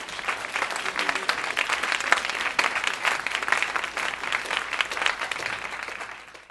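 An audience applauding: many people clapping at once in a steady wash of claps.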